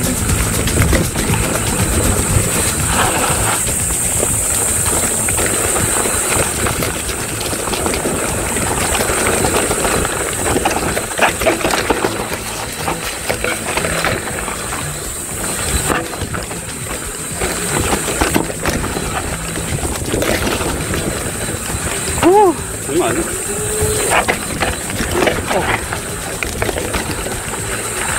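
Mountain bike running fast down a dirt singletrack: a continuous rushing and rattling noise from the tyres on the trail and the bike shaking over the ground. Near the end a rider gives a few short rising-and-falling vocal exclamations.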